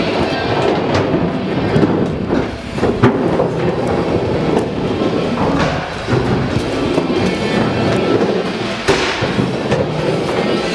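Skateboard wheels rolling fast over a concrete floor: a continuous rough rumble with a few sharp clacks, about 1, 3 and 9 seconds in, with rock music underneath.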